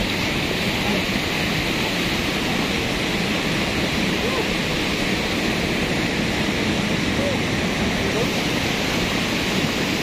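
Cold lahar flood, a torrent of muddy volcanic floodwater, rushing steadily down a river channel as an even, unbroken noise.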